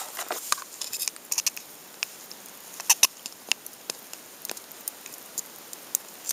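Irregular light ticks and crackles, scattered a few at a time with short quiet gaps.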